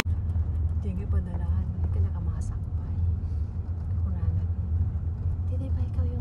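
Steady low rumble of a car being driven, heard from inside the cabin, with faint voices talking over it.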